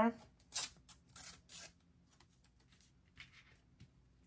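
Washi tape being torn by hand: three short, quick rips in the first two seconds, then faint paper handling.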